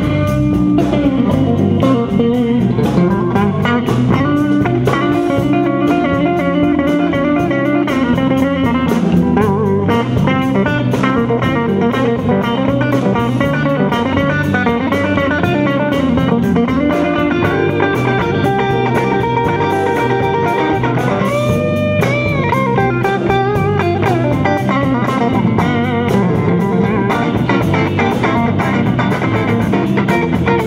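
Live blues band playing: a Stratocaster-style electric guitar plays lead over a steady, repeating bass line. Near two-thirds of the way through, the guitar bends a note upward and holds it.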